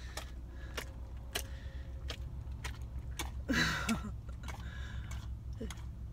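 A Doberman chewing a hamburger: a steady run of short wet clicks and smacks, with his chain collar clinking. A short vocal sound comes about halfway through.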